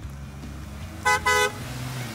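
A minivan's horn tooting twice in quick succession about a second in, over the steady low hum of the van's engine and tyres as it pulls past close by.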